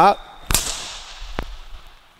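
One sharp smack about half a second in, ringing out through a large sports hall and fading over about a second, followed by a fainter tick.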